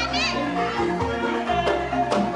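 Calung Banyumasan ensemble playing: bamboo xylophones ring out steady repeated notes over a rhythmic low beat. A high, wavering voice is heard over the music near the start.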